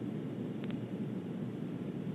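Steady low rushing noise with no voice, broken only by a faint double click about two-thirds of a second in.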